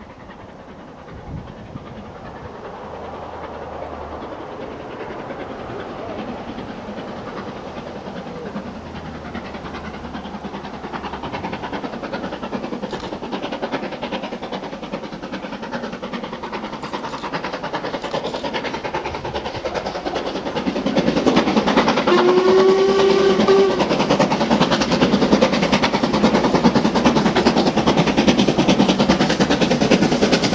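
LMS Black Five 4-6-0 steam locomotive approaching, its working sound growing steadily louder and much louder about two-thirds of the way in. Its whistle gives one held blast of about a second and a half near the end.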